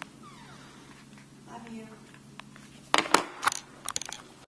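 Quiet room tone, then a quick cluster of short clicks and rustles about three seconds in, like handling noise.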